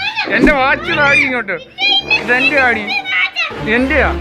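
A young girl talking and laughing in a high-pitched voice.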